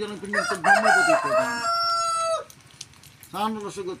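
A rooster crowing once: a long call that ends in a steady held note and drops away about two and a half seconds in, heard over a man's chanted recitation.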